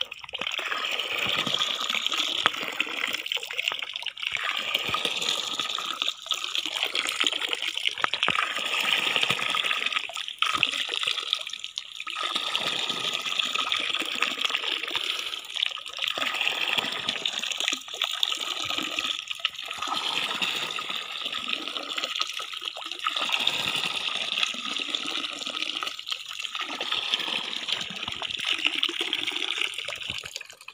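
A stream of water pouring from a PVC pipe into a plastic jerry can, a steady splashing rush with brief dips. It falls away sharply at the very end.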